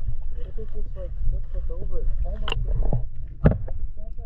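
Muffled audio from a camera held underwater: a steady low water rumble with garbled voices over it, and two sharp knocks, the first about two and a half seconds in and the second a second later.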